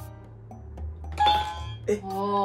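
Quiz answer buzzer giving a doorbell-like chime about a second in, over background music.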